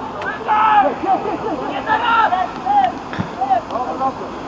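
Several players shouting and calling to each other across an outdoor football pitch in short, overlapping calls, with a couple of short knocks among them.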